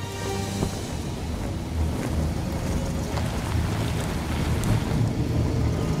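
Background music over the steady rumble of an open vintage car driving, with a continuous rushing noise of wind.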